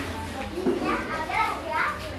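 Children's voices and chatter in the background, much quieter than the amplified preaching around it.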